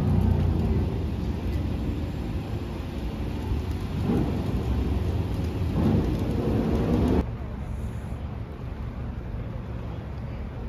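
City street traffic: a steady rumble of road vehicles, with engines rising in pitch twice as they pull away. About seven seconds in it cuts to a quieter, even outdoor background.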